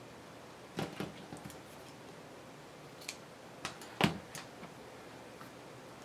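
Craft materials and tools handled on a cutting mat: a few light clicks and taps over a quiet room, the loudest about four seconds in.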